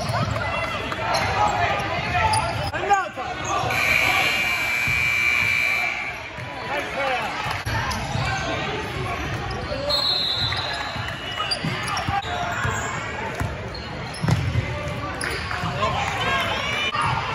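Basketball bouncing on a hardwood gym floor during play, with players' and spectators' voices echoing in a large hall. A steady high tone sounds for about two seconds, starting about four seconds in.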